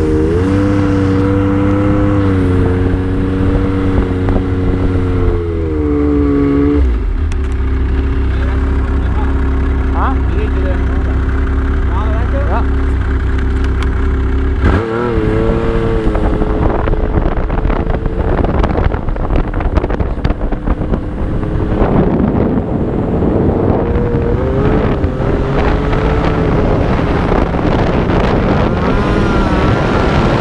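Yamaha snowmobile engine running under way. It holds steady, drops in pitch about six or seven seconds in, and picks up again around fifteen seconds in. Through the second half a rushing noise grows over the engine.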